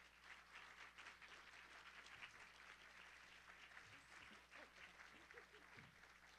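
Faint audience applause, a dense, even patter of many hands clapping.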